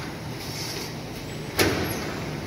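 Automatic bakery panning machine running with a steady mechanical hum and a faint hiss about half a second in, then one sharp, loud clack about one and a half seconds in as its trays and conveyor work.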